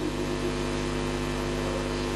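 Steady electrical mains hum, a stack of even tones with hiss over it, from the microphone and recording chain.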